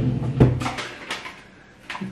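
A sharp click, then a few lighter clicks and knocks, as a container of under-eye patches is opened and handled.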